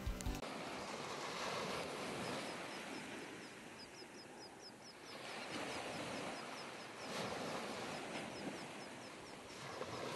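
Small waves washing up over a sandy beach, a steady hiss that swells and ebbs. A bird chirps in quick short high notes through the middle and again near the end.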